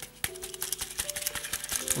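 Loose limescale chips rattling inside a plastic Zanussi dishwasher spray arm as it is shaken by hand: a fast, irregular patter of small clicks. The rattle is the sign of the arm clogged with scale from hard water. Faint background music with a few held notes runs underneath.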